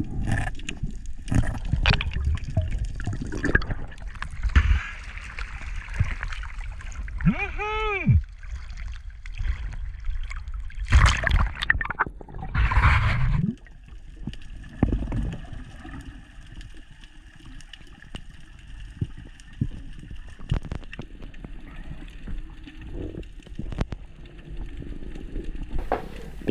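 Underwater camera audio during a spearfishing dive with a speared diamond trevally on the shaft: water sloshing and gurgling, with scattered knocks and clicks. About eight seconds in there is a short muffled vocal sound that rises and then falls in pitch. Around 11 and 13 seconds there are loud rushing splashes as the diver breaks the surface into choppy water.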